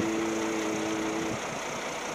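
Bus engine idling steadily close by. For the first second or so a man holds one long, flat 'eee' hesitation sound over it.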